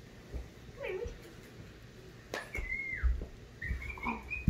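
Squeaky plush duck dog toy squeezed: a few short high squeaks, the longest about three-quarters of the way in, falling in pitch. A couple of dull thumps on the floor come with it.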